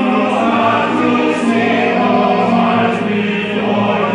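A male opera chorus singing together in full voice, holding long sustained notes, with a fresh chord entering at the start.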